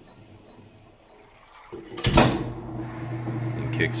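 Kenmore 800 series top-load washer, quiet at first, then about two seconds in the lid shuts with a sharp knock and the motor kicks right back in with a steady hum: the lid safety switch is closed again and the spin cycle resumes.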